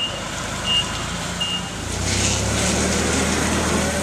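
Forklift passing close by: its warning beeper gives short single high beeps about every 0.7 s, stopping about a second and a half in. Its engine then runs with a steady, louder low rumble.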